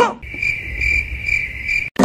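Crickets chirping: a steady high trill that swells about twice a second, over a faint low rumble, cutting off abruptly near the end.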